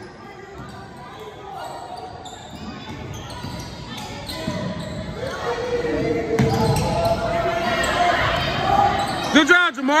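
Indoor basketball game in a gym: a ball dribbling on the hardwood, with spectators' voices growing louder into held shouting through the middle. A quick run of squeaks, typical of sneakers on the court, comes just before the end.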